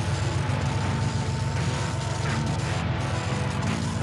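Animated-series soundtrack: steady mechanical sound effects over background music, with no speech.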